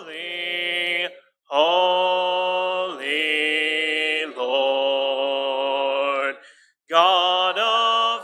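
A cappella hymn singing led by a man's voice, in long held notes with two short breaks between phrases.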